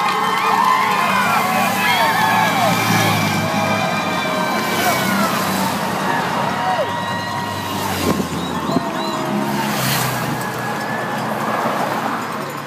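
Roadside crowd shouting and cheering as the race passes, over the engine hum of escort motorcycles and support cars driving by.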